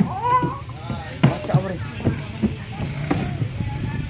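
A person's voice making short, wordless exclamations, the first one rising and falling in pitch, with a few sharp knocks as the phone is bumped and handled.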